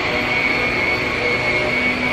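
Canister vacuum cleaner running steadily, its motor giving a constant high whine over a rushing air sound.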